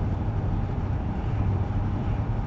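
Steady low rumble of a car in motion, heard inside the cabin: engine and road noise with no sudden events.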